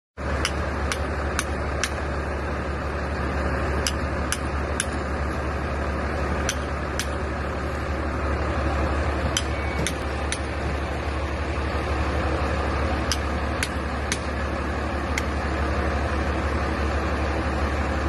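Wheeled excavator's engine idling steadily with a strong low hum, with sharp clicks about twice a second in several short runs.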